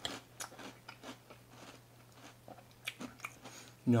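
Close-up chewing of a mouthful of cereal in milk, with scattered crisp crunches; the cereal is still crunchy in the milk.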